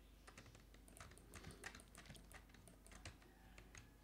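Faint, irregular clicking of a computer keyboard and mouse, a scatter of light taps over a quiet room.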